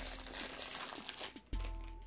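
A snack packet crinkling as it is handled, with a few sharp crackles, fading out about halfway through. Soft background music with steady tones takes over near the end.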